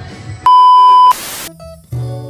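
A loud, steady electronic bleep tone of about two-thirds of a second, an edited-in sound effect, followed at once by a short burst of hiss; soft background music plays before it and returns near the end.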